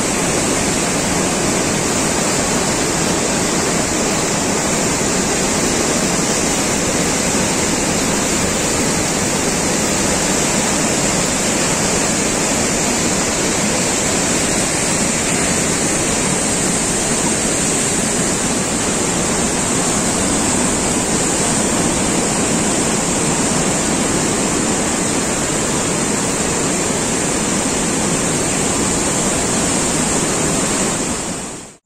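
A large, swollen, silt-laden river in spate rushing through rapids: a loud, steady wash of turbulent water.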